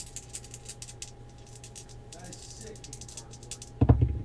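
Two dice rattling in a cupped hand, a quick run of small clicks, then a louder thump near the end as they are thrown down onto the playmat.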